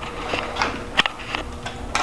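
Handling noise from a Barnett Quad 400 crossbow as it is picked up and moved: a handful of light, sharp clicks and knocks spread over two seconds.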